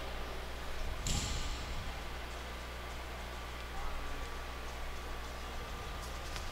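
Quiet room tone of a shooting hall with a low, steady electrical hum and a brief soft hiss about a second in; no shots are fired.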